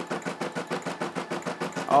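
Brother SE600 embroidery machine stitching, its needle running in a quick, even rhythm of stitches.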